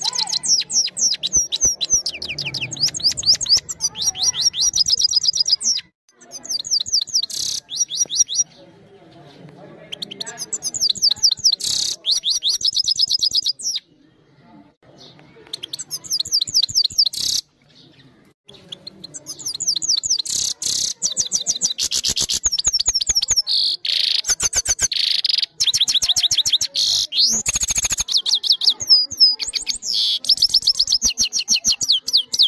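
Caged Eurasian goldfinch singing: long high-pitched phrases of rapid twittering and trills, broken by a few short pauses.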